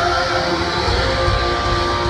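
Live rock band playing loudly at a concert, with long held guitar and band notes.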